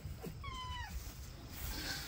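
A fox gives one short, high whining call with a drop in pitch at the end, just after a brief lower call.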